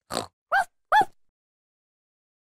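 Peppa Pig's trademark cartoon snort: three quick snorts within about a second, the last two rising in pitch.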